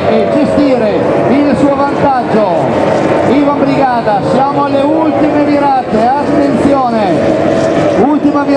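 Formula 2 racing powerboats' outboard engines running at race speed, heard under a commentator's voice.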